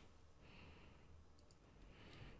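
Near silence: faint room tone with a quick, faint double click from a computer mouse about a second and a half in.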